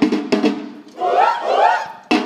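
Samba bateria drums (surdos and snares) play a few sharp strokes, then stop, and about a second in the group of players chants a short shouted phrase together before the drums come back in.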